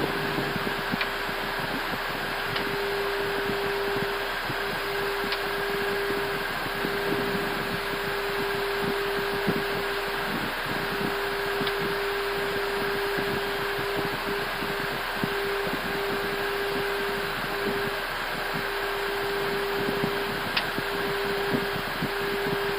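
Steady flight-deck noise of an Airbus A320 on final approach: a hiss of airflow with a constant hum that briefly drops out several times, and a few faint clicks.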